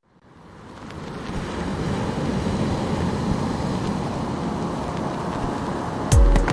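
Ocean surf washing on a beach: a rushing wash of waves that fades in from silence over about the first two seconds, then holds steady.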